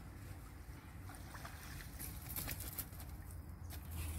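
A few short splashes and knocks as a landing net is worked through the shallow water to scoop up a hooked fish, over a low steady rumble.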